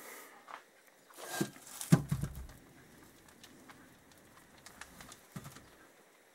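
Scattered handling knocks and clicks, the loudest a knock about two seconds in, as the aluminium motorcycle rear hub is put down and turned over by hand on a workbench.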